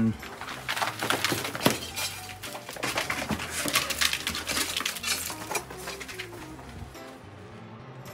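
Rhino iguanas scrambling in a chase, their claws clicking and scraping over wood, mulch and shell substrate, with loose shells clinking. The scrabbling is busiest in the first half and thins out after about six seconds.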